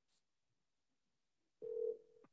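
Near silence, then about one and a half seconds in a short, steady telephone tone sounds for about half a second, at the start of a recorded phone call from a wiretap.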